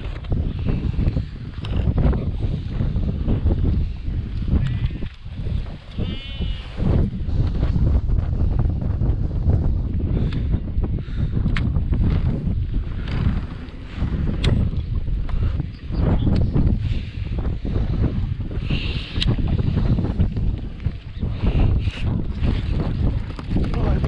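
Wind rumbling steadily on the microphone, with sheep bleating now and then, one wavering bleat about six seconds in. Light clicks and knocks of the rod and reel being handled come and go.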